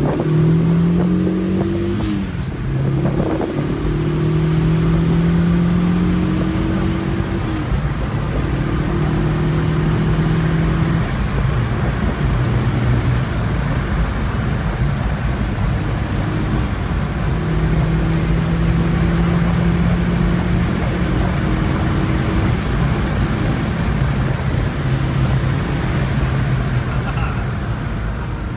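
Saab 9-3 Viggen's built turbocharged four-cylinder engine pulling hard under acceleration, heard from inside the cabin. Its pitch climbs and drops back at each upshift, about 2, 8 and 11 seconds in. It eases off for a few seconds in the middle, then climbs again.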